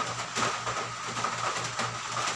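Soap-lathered hands rubbing together, a soft irregular rubbing and squishing, over a steady low hum.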